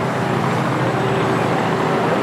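Motorcade cars driving slowly past on a city street: a steady engine and traffic rumble.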